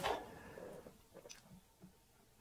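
Quiet room tone, with a few faint short ticks a little over a second in.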